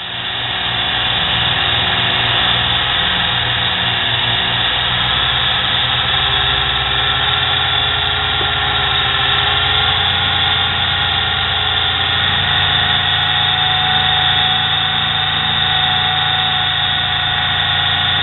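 Small cheap electric motor of a homemade mini lathe spinning the chuck, coming up to speed over the first couple of seconds and then running with a steady whine whose speed wanders up and down.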